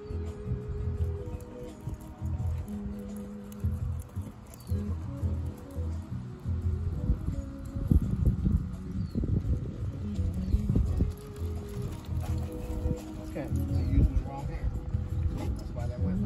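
Background music with held bass notes that step in pitch every second or so.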